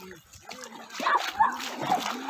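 Feet splashing as people wade through shallow river water, with voices calling out over it; both grow louder about a second in.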